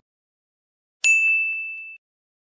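A single bright ding sound effect, a bell-like chime that sounds about a second in, rings on one high tone while fading, and is cut off suddenly.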